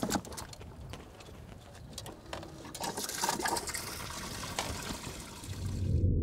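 Water splashing and sloshing in a boat's livewell as a walleye is lowered in and thrashes, with a few sharper splashes. A low rumble swells in near the end.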